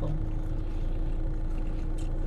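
Steady low rumble and hum of a car idling, heard from inside the cabin.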